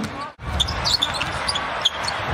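Basketball being dribbled on a hardwood court, with a few sharp bounces and short high sneaker squeaks over arena background noise. The sound cuts out briefly near the start.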